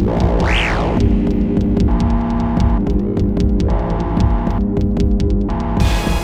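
Instrumental electronic music from an analog hardware synth and sequencer jam. A dense, sustained low bass drone runs under rapid clicking percussion, and a quick synth sweep rises and falls about half a second in.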